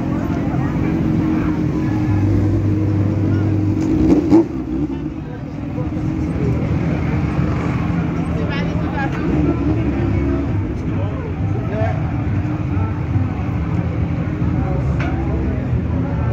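Motorcycle engines running at low revs close by, a steady low sound with a brief louder burst about four seconds in, under the chatter of a crowd of people.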